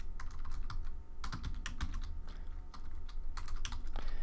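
Typing on a computer keyboard: a quick, irregular run of keystrokes as a line of code is entered, over a steady low hum.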